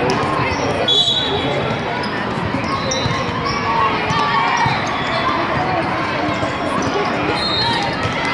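Volleyball rally in a large, busy hall: many voices of players and spectators from the surrounding courts chatter and call out, over the thuds of volleyballs being hit and bouncing. A few short, high, steady tones cut through about a second in, again around three seconds, and near the end.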